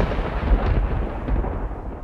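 A loud, deep rumble that slowly fades away.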